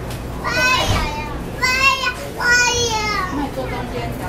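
Children's voices calling out three times in high, wavering tones, over a steady low hum of the standing train.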